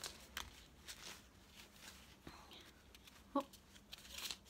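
Faint rustling and small clicks of a small gift package being opened by hand.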